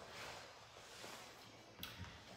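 Near silence: faint room tone, with one brief soft click near the end.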